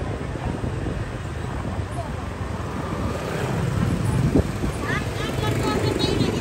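Street traffic: a steady low rumble of motorbikes going by, with a voice starting up near the end.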